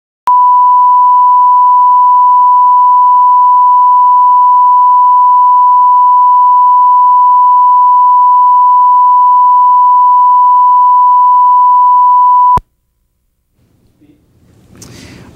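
Steady 1 kHz line-up reference tone that accompanies colour bars on a video master, one unbroken loud tone that starts with a click and cuts off suddenly about a second and a half before the end.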